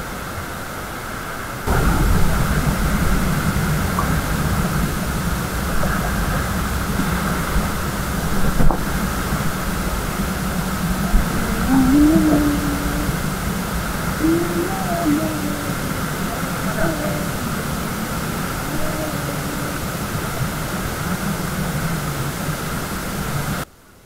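Whitewater rapid rushing and churning around an inflatable raft, a loud steady roar with a deep rumble that starts about two seconds in, with faint voices calling out partway through.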